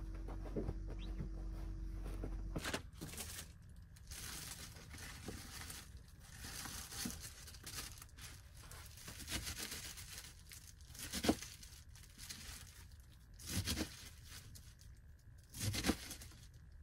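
Leafy vegetables being torn and handled by hand: crisp tearing and crinkling in irregular bursts, the sharpest about eleven seconds in. For the first couple of seconds a steady low hum with soft bumps is heard before the tearing begins.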